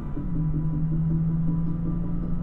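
Electronic music playing through the Tacoma's 7-speaker JBL sound system, heard inside the cab while driving: a held low bass note under a repeating pulse of short notes, with road noise underneath.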